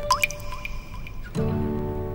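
A drop of water falling into a cup of tea with a single plop that rises in pitch, followed by two fainter drips. It is water leaking through from the damp above. Soft background music starts about a second and a half in.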